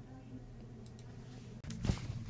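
Quiet room tone with a low steady hum, then a few short clicks near the end, the last one the loudest.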